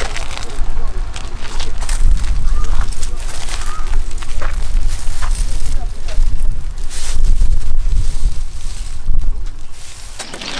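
Wind buffeting the camera microphone: a loud low rumble that swells and drops in gusts.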